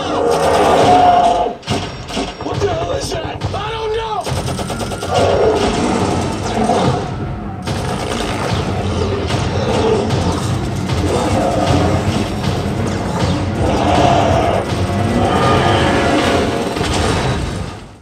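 An action film soundtrack: orchestral score under gunfire, booms and shouted voices.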